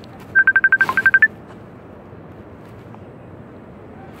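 Mobile phone beeping during a call: a fast run of about ten short beeps on one note, ending on a slightly higher beep, all within the first second or so. It signals that the call has dropped.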